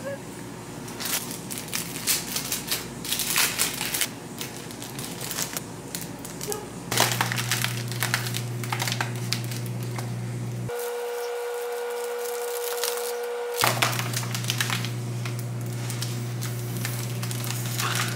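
Foil balloons crinkling and crackling as they are handled and blown up through a straw, over a steady low hum. Roughly two-thirds of the way through, the crinkling stops for about three seconds while a steady held tone sounds.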